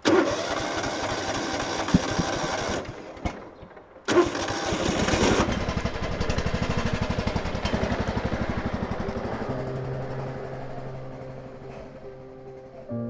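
Riding lawn mower engine starting and running for about three seconds, then cutting out. It starts again about four seconds in and keeps running with an even pulse, fading as background music comes in near the end.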